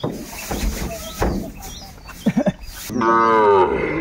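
A Sahiwal calf lets out one long moo about three seconds in, its pitch falling slightly. Before it come a few short knocks.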